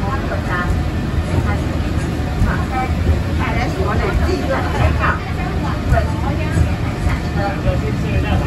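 Peak Tram funicular car running down its track, heard from inside the cabin as a steady low rumble, with passengers talking over it.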